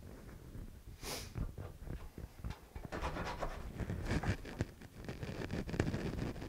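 Flush-cut saw trimming a guitar's end wedge flush with the sides: short scratchy saw strokes, sparse at first and coming quickly and densely in the second half.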